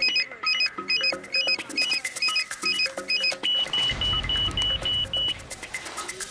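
Electronic dramatic score: a repeating pattern of short, high synthesized blips over a fast ticking beat. About halfway through it changes to a run of evenly spaced single beeps, and a low rumble comes in under it.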